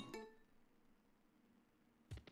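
A slot-game chime dies away within the first half second, then near silence.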